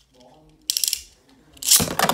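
Beyblade spinning tops clattering against each other and the plastic stadium wall in two rapid rattling bursts, the second louder and starting near the end.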